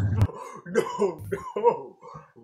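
A young man laughing in several short, breathy bursts.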